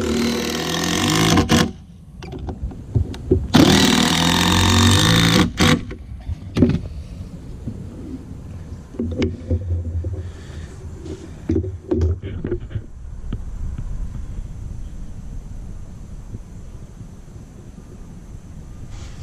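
DeWalt 20V MAX impact driver driving deck screws into a wooden deck board in two bursts, the first about a second and a half long, the second about two seconds. Lighter knocks and clatter follow.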